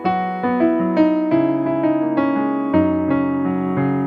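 Electronic keyboard in a piano voice, played with both hands in C-flat major: a right-hand line of notes over changing left-hand chords and bass notes, a new note or chord about every half second.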